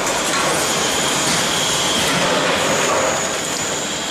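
Vertical form-fill-seal packing machine running while bagging sprouts: a steady, dense mechanical noise with faint high-pitched tones that come and go.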